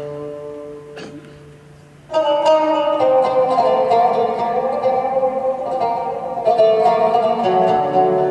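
Turkish oud playing: a few soft held notes, then about two seconds in a sudden louder passage of quickly plucked notes that runs on.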